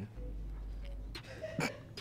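Quiet pause with a steady low hum, broken about one and a half seconds in by a single brief vocal sound from a person, like a hiccup or a clipped noise in the throat.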